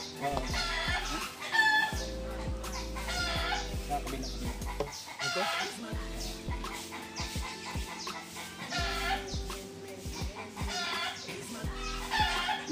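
Chickens clucking, short calls every second or two, over steady background music with a few light knocks.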